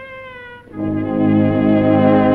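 Late-1920s dance orchestra on an early sound-film recording. A held note with vibrato dies away, and just under a second in the full band comes in louder with a sustained chord, the closing chord of the number.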